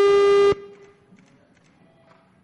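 A steady electronic beep at one unchanging pitch, cutting off abruptly about half a second in.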